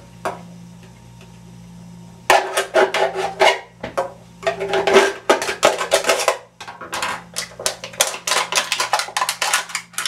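An aluminium beer can being cut and torn open with a sharp blade: irregular metallic scraping, crinkling and clicking, starting about two seconds in, with a brief pause near the middle.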